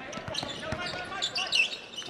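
Basketball bouncing on a hardwood court, several sharp bounces in the first second, with high sneaker squeaks near the end over the hum of a gym.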